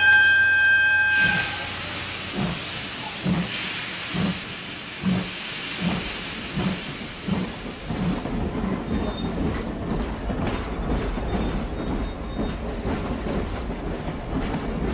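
A steam locomotive whistles once, about a second long, then steam hisses and the engine starts chuffing, slowly at first and coming faster as the train gets under way, with a low rolling rumble building beneath it.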